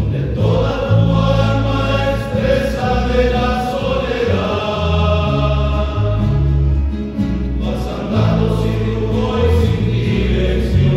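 Men's choir singing a hymn together, with steady low bass notes underneath.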